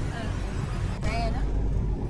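Steady low rumble of a car heard from inside its cabin, with soft, quiet speech over it about a second in.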